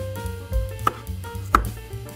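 Kitchen knife slicing through peeled garlic cloves and striking a bamboo cutting board: two sharp knife strikes, a little under a second in and again about two-thirds of a second later.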